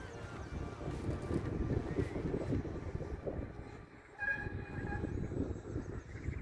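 Wind buffeting the microphone, an irregular low rumble that dips about four seconds in, with a short faint high tone just after.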